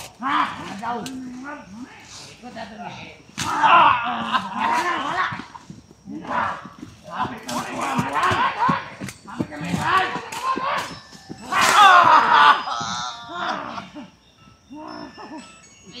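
People shouting and yelling excitedly, with voices overlapping; the loudest yells come about four and twelve seconds in.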